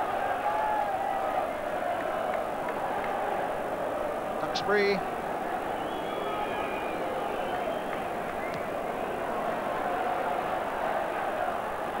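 Steady, even noise of a large football stadium crowd, with one short word from a commentator about a third of the way in.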